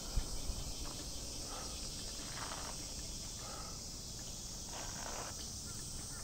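Steady high-pitched drone of cicadas in the trees, unbroken throughout, with a few faint soft sounds underneath.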